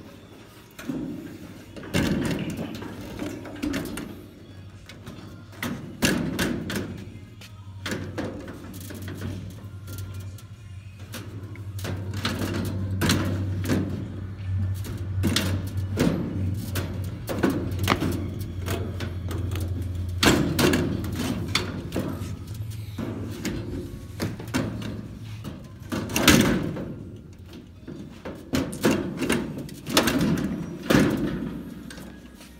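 Irregular knocks and thuds as a clear plastic cover and the stainless steel panels and knobs of a taco cart are handled, over music and a steady low hum.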